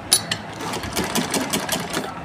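Sewing machine stitching pleats through folded cotton fabric, clicking rhythmically at about five or six stitches a second; it starts just after the beginning.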